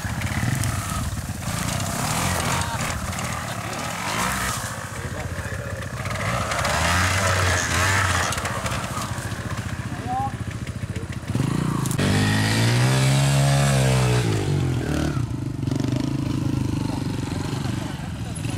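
Twin-shock trials motorcycle engine running unevenly at low revs as the bike is ridden through a hillside section. About twelve seconds in, one longer rev rises and then falls back over a few seconds.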